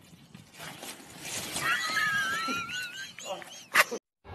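Bicycle crash on a paved street: a high, wavering squeal lasts a second or two, then a single loud, sudden crash near the end as the rider and bicycle hit the road.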